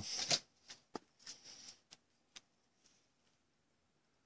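Stack of trading cards handled in the fingers: a few soft clicks and brushes as the cards slide against each other in the first couple of seconds, then near silence.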